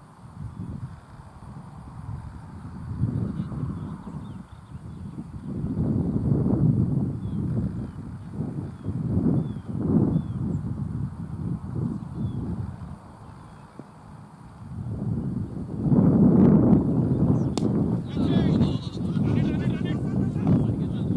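Distant players' shouts and calls across an open cricket field, over uneven wind rumble on the microphone that swells loudest about halfway through and again near the end.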